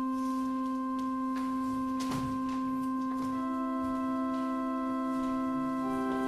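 Church organ holding a single sustained note with a soft, pure tone, joined by further held notes about halfway through to build a slow chord, with another note added near the end.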